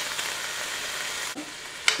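Diced bacon sizzling as it fries in a large nonstick skillet, with a spoon stirring it around the pan. The sizzle drops a little past halfway.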